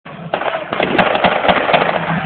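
Irregular sharp cracks of blank small-arms fire, several a second, over the murmur of a watching crowd.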